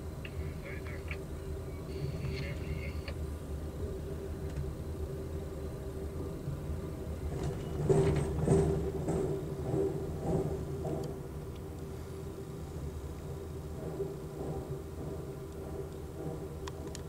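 Passenger train rolling slowly, heard from on board as a steady low rumble. About eight seconds in comes a louder run of clatters lasting a few seconds, typical of the wheels crossing the frogs and diamond of a railroad interlocking.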